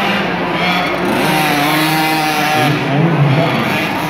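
Small 50cc youth motocross bike engines revving, their buzzing pitch rising and falling.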